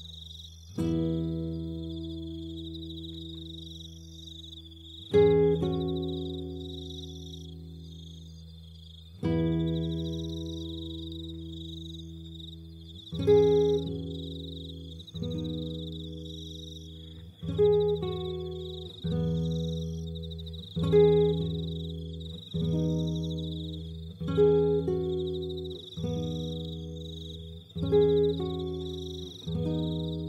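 Acoustic guitar playing slow plucked chords, each left to ring out: three chords about four seconds apart, then one every second and a half to two seconds. A steady high cricket chirping runs behind the guitar.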